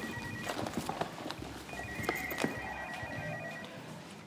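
A telephone ringing with an electronic trill in rings about two seconds long: one ring ends about half a second in and the next runs from near the second second to near the end. Light clicks and rustles of items being handled in a handbag come through underneath.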